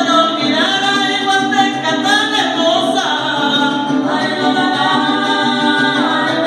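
Son huasteco (huapango) music: a violin playing with a steady strummed accompaniment on a small guitar, and long held notes that glide up at the start of each phrase, which sound like a singing voice.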